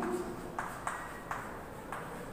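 Chalk writing on a blackboard: about four short, sharp taps and clicks as the letters of a word are chalked on.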